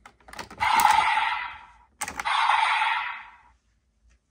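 Desire Driver toy belt with a Jyamato buckle: a click as the buckle is worked, then an electronic sound effect from the toy's speaker that fades out over about a second and a half, heard twice.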